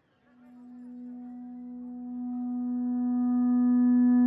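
A single steady sustained musical note, one unwavering pitch with its overtones, swelling in from silence about a quarter second in and growing steadily louder, with more upper overtones filling in about two seconds in.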